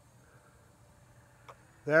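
Faint background hum with a single soft click about one and a half seconds in, then a man's voice starts near the end.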